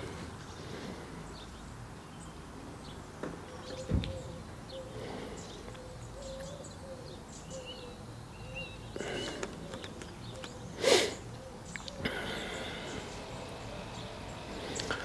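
Quiet outdoor ambience with faint bird calls, including a low wavering hoot-like call through the middle. A small knock about four seconds in and a short, louder noise near eleven seconds.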